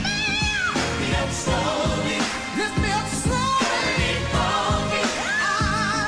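A solo singer with a live band, the voice gliding and wavering through held notes over a steady drum beat.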